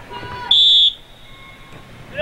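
A referee's whistle: one short, shrill blast of under half a second, about half a second in.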